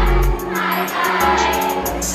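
Live pop music over a PA, with male voices singing together over a steady beat; the bass drops out for about a second midway and then returns.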